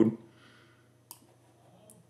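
Computer mouse button clicks: one sharp click about a second in and a fainter one near the end, as a field is picked up and dropped in the software.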